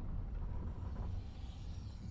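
Low, steady rumble of wind and road noise from a car travelling fast on a highway.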